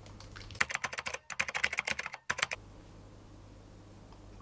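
Fast typing on an Apple MacBook laptop keyboard: a quick flurry of keystrokes that starts just over half a second in, runs about two seconds and then stops.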